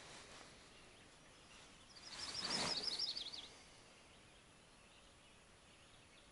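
Quiet dawn ambience in the woods. About two seconds in, a small bird sings a quick series of high notes lasting about a second and a half, over a soft rush of noise.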